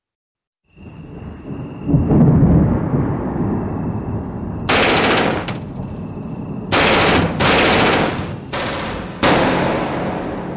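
Recorded battle sound effects opening a rock track: after a brief silence, a rumbling bed of gunfire builds up, broken by several loud blasts about a second long in the second half.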